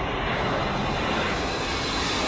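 A large fire burning on an offshore oil platform: a steady, dense rushing noise with a low rumble underneath.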